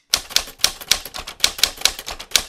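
Typewriter-key sound effect: a quick, uneven run of sharp clacks, about eight a second, laid over a title card.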